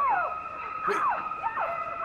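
Shrieking high violins of a horror film score, playing shrill held notes with repeated downward slides, mixed with a woman's screams as she is stabbed in a shower.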